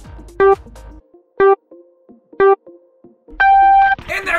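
Electronic race-start countdown: three short beeps about a second apart, then one longer, higher beep that signals go.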